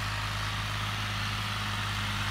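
Tractor diesel engine running steadily, an even low hum with no change in pitch.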